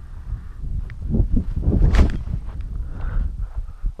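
Footsteps in grass and wind rumbling on a head-mounted camera's microphone, rising to one loud rush about two seconds in: a pilot's spin and throw hand-launching a small discus-launch RC glider.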